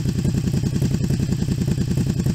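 Honda VTZ250's 250 cc four-stroke V-twin engine idling steadily, an even low pulsing exhaust note.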